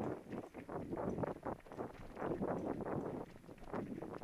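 Mountain bike clattering over rocky singletrack: a dense, irregular run of knocks and rattles from the tyres hitting rock and the frame and chain shaking.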